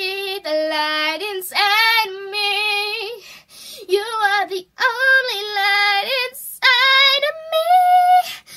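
A girl singing unaccompanied: short phrases of held, wavering notes with brief pauses between them.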